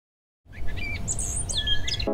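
Birds chirping, several short gliding calls, over a steady low background rumble, starting about half a second in.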